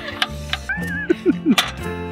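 Background music with a few light, irregular clicks of wooden game blocks being handled and set on a stacked block tower, and a brief voice sound about halfway through.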